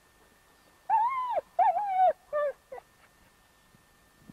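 A dog whining in four high cries that rise and fall in pitch. The first two last about half a second each and the last two are short.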